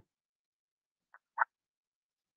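Near silence with two short, faint clicks about a second in, a quarter of a second apart.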